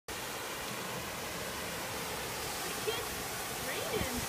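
Steady rushing hiss of a tall waterfall's falling water and spray, heard from close beside it.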